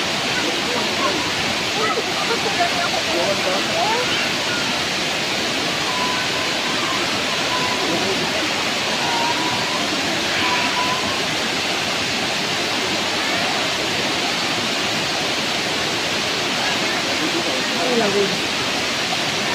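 Steady rush of a wide curtain waterfall pouring down a cliff face into a rocky river, an even, unbroken roar of water. Faint voices come through it now and then.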